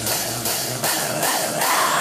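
Lo-fi, distorted garage-rock music with no vocals, drums hitting about two or three times a second over a noisy wash. The bass drops out about halfway through.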